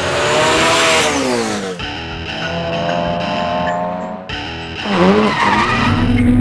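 Race car engines revving over rock guitar music. The engine note falls away over the first two seconds, holds high through the middle, then dips and climbs again near the end.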